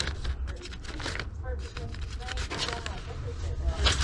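Paper sleeves of 45 rpm records rustling and scraping as they are flipped through by hand, with faint talk in the background.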